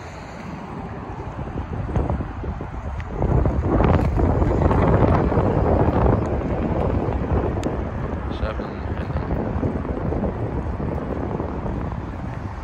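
Road traffic noise mixed with wind on the microphone. It swells about three seconds in, is loudest for the next few seconds, then settles back to a steady rush.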